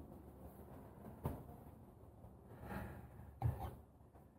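Faint handling sounds: a couple of soft knocks, about a second in and again near the end, as a corded drill with a phone mount is moved and set against timber, over a low steady background hum. The drill motor is not running.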